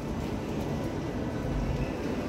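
Steady low background hum of a shopping mall's indoor space, with a few faint steady tones over it and no distinct events.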